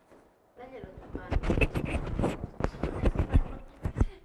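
Indistinct talking mixed with a quick run of sharp knocks and clattering, starting about half a second in.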